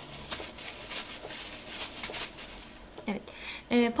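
Rustling and light irregular clicks as a small plastic bag of sugar-coated dried lemon slices is handled and dried fruit pieces are set on a metal tray; a woman starts speaking near the end.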